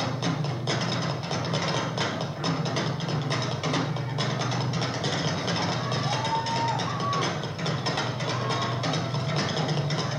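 Rock drum kit played live, a fast, dense stream of drum and cymbal hits.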